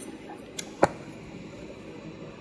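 A paper planner sheet being handled: one short, sharp snap a little before halfway, with a fainter one just before it, over quiet room tone.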